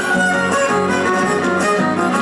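Son huasteco played by a violin over strummed guitars, the huasteco trio music that accompanies huapango dancing.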